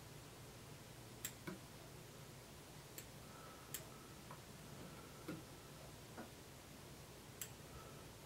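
Fine-tipped fly-tying scissors snipping the butts of a deer hair head: about seven faint, sharp snips at uneven intervals over near silence.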